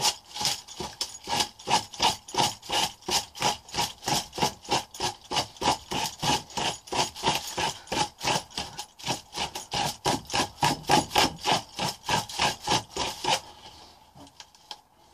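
Rapid back-and-forth scraping on paper, about four strokes a second, kept up steadily until it stops just before the end: a hand-held tool being worked against the pages of a book.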